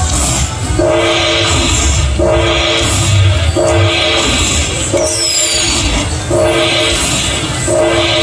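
Slot machine tallying its bonus-round prizes into the win meter: a horn-like chord of three tones with a rushing noise, repeating about every 1.4 seconds as the total counts up. A high falling sweep comes about five seconds in.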